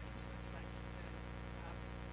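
Steady electrical buzz: a low hum with a dense stack of overtones, unchanging throughout, with two brief faint hisses in the first half-second.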